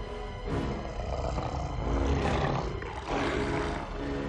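Orchestral film score with a beast's roar over it: two loud swells, the second falling away about three seconds in.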